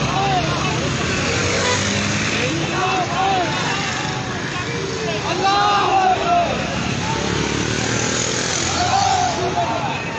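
A crowd of many men on foot, voices talking and calling out over one another in a steady din, with louder shouts about five to six seconds in and again near nine seconds.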